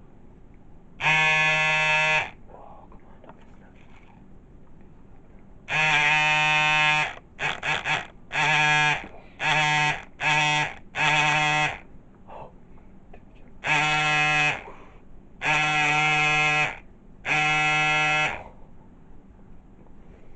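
A horn-like tone, steady in pitch, sounded in about a dozen blasts of half a second to a second each, with a quick triple toot in the middle.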